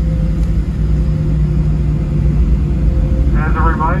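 Cabin noise of a Boeing 737-700 taxiing, heard from a window seat beside the wing: a steady low rumble with a hum from its CFM56-7B engines at idle.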